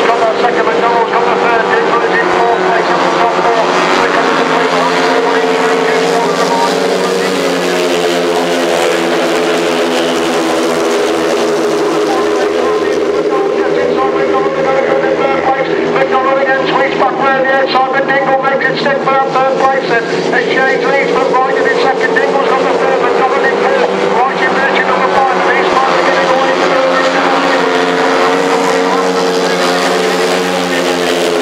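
Several 500cc solo sand-racing motorcycles running flat out together, their overlapping engine notes drifting up and down as they race.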